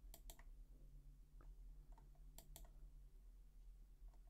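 Faint clicks of computer controls, in two quick pairs about two seconds apart, while the on-screen document is scrolled down, over a low steady hum.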